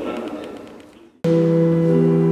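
An earlier sound fades away over the first second, then a church pipe organ starts suddenly, just after a second in, with a held chord of several steady notes.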